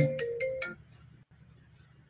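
An electronic ringtone melody of short, steady notes stops less than a second in, followed by near silence.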